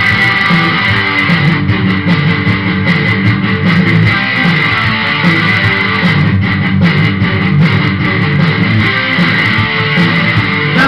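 Guitar playing a loud, steady instrumental passage of a song, with no singing.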